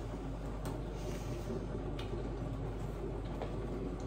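Quiet indoor room tone: a steady low hum with two faint soft clicks, about half a second and two seconds in.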